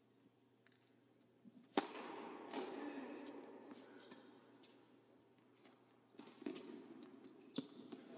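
Tennis ball struck by rackets in a rally on an indoor court: one sharp crack a little under two seconds in, then fainter hits later, over a steady low hum.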